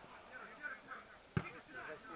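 A football kicked once with a single sharp thud about one and a half seconds in, over faint distant voices.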